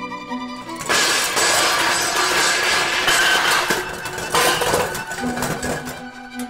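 A loud crash of breaking, shattering debris starts about a second in and lasts about three seconds, with a second crash just after. It cuts across violin music, which carries on quietly near the end.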